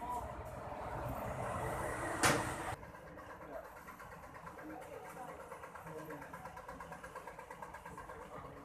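Busy street ambience: people talking in the background and car traffic. There is a sharp knock a little over two seconds in, and the noise drops suddenly just before three seconds in.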